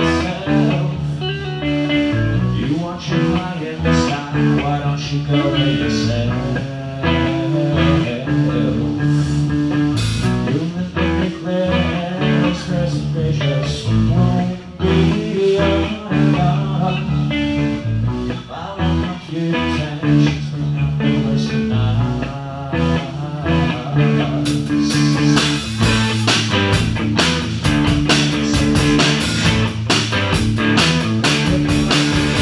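Live rock band playing loudly: electric guitar, bass guitar and drum kit. The cymbals grow brighter and busier for the last six seconds or so.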